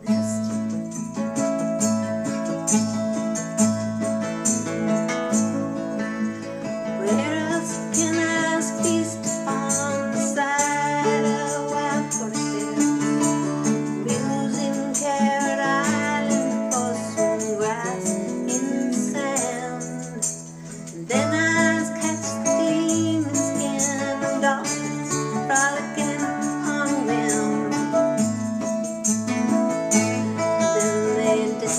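A woman singing a folk song over fingerpicked 12-string acoustic guitar, with a brief drop in the music about twenty seconds in.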